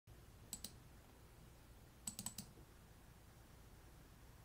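Near silence broken by short, sharp clicks: two close together about half a second in, then a quick run of four about two seconds in.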